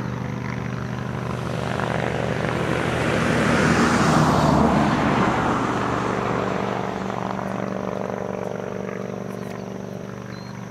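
An aircraft passing overhead: its engine noise swells to its loudest about halfway through, then fades away, over a steady low hum.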